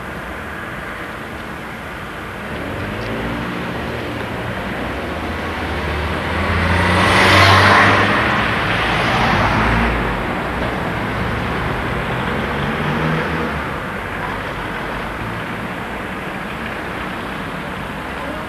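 Road traffic: car engines running and cars driving past, one passing close and loud about seven to eight seconds in, with smaller passes after it.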